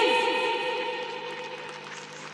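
Recorded music starting over the sound system for a dance number: a sudden loud hit with rapidly falling sweeps and held tones, ringing on and fading away steadily.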